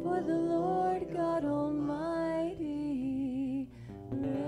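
Live worship band singing a slow praise chorus, voices holding long notes with vibrato over instrumental accompaniment; the phrase ends and the sound dips briefly near the end before the next line begins.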